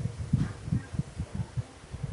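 Soft, irregular low thumps, several a second: handling noise as a hand holds and turns a metal motor-controller box.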